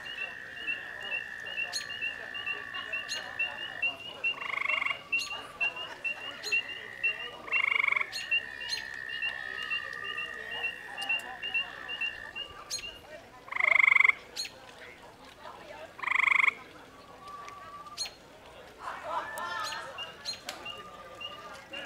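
Frogs calling at a pond: a high, steady trill held for several seconds at a time, broken by four short, loud calls, over a fast, regular chirping.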